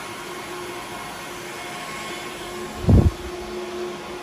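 Cooling fans of HPE ProLiant DL580 Gen9 rack servers running under test: a steady whir with several constant humming tones. A single low thump about three seconds in.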